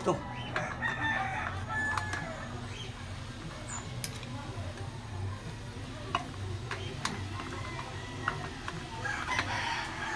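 Steel tyre levers click sharply against a spoked dirt-bike rim, a few separate taps, as a knobby tyre's bead is worked onto it. A bird calls in the background.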